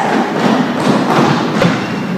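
A few dull thuds over a busy background, echoing in a large gym.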